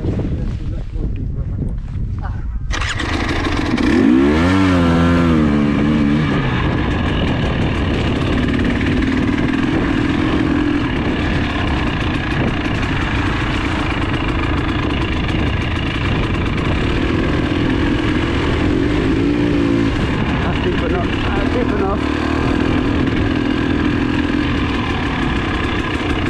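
KTM enduro trail motorcycle's engine, heard from the rider's helmet camera: the sound jumps up about three seconds in, the revs rise and fall as the bike pulls away, then it runs steadily along the lane, with another brief rev change near the end.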